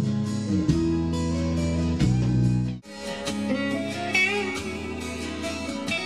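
Recorded rock music with a prominent bass guitar playing sustained low notes. About three seconds in it breaks off abruptly and resumes with an electric guitar playing bent, wavering notes over the band.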